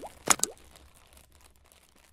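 Logo-intro sound effect: two quick pops, at the start and about a third of a second in, each with a short upward swoop in pitch, then fading away over the next second.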